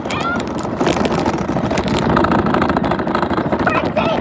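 Radio-controlled monster truck running over asphalt: a loud, steady mix of motor and tyre noise with occasional sharp knocks as it bounces and tumbles.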